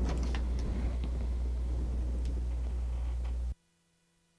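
Steady low background hum and room noise from the recording microphone, with a few faint clicks, cutting off abruptly to dead silence about three and a half seconds in.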